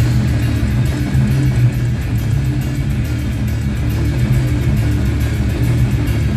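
A death metal band playing live: heavily distorted electric guitars and bass, thick in the low end, over fast, even drumming.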